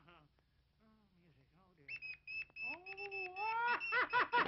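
Old cartoon soundtrack: a low mumbling voice, then from about halfway a run of quick high repeated tones over a wavering, whistle-like sliding tone that sweeps upward near the end.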